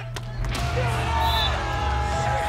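Background music, with a sharp smack of a hand spiking the beach volleyball just after the start, then crowd cheering rising about half a second in.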